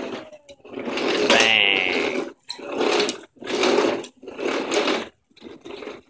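A voice imitating an engine with a buzzing 'brrrm', in about six short bursts with brief pauses between them, as if driving the toy car.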